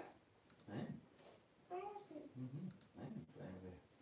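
Quiet speech under the breath, with a few light clicks from a handheld device being handled while a livestream is set up.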